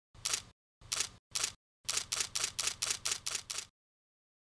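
Camera shutter clicks: three single shots, then a rapid burst of about nine shots at about five a second.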